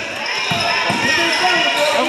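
A basketball being dribbled on a gym floor, a few low bounces about half a second apart, with spectators' voices around it.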